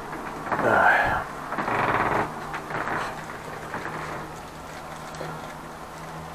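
Plastic bag crinkling in two bursts in the first two seconds as a bag of chilled beef is handled and untied, followed by a quieter steady low hum.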